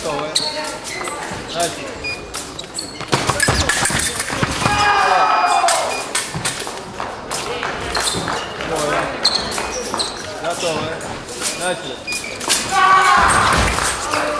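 Foil fencers' feet stamping and thudding on the piste with scattered sharp knocks, in a large reverberant hall. Loud voices shout twice, about four seconds in and again near the end.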